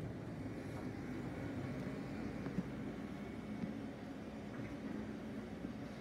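Steady low room hum with a faint constant tone, broken by one short click about two and a half seconds in.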